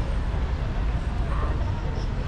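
Outdoor crowd ambience: faint, indistinct voices over a steady low rumble.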